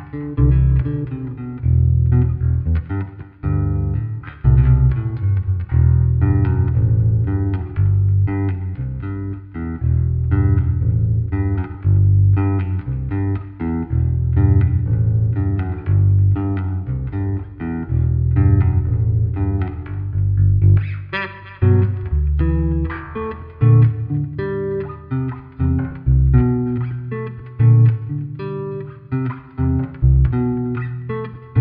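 Bluesville "Surf King" electric bass guitar played as a solo-instrument demo: a continuous line of plucked notes in the low register, with a brighter stretch of notes a little past the middle.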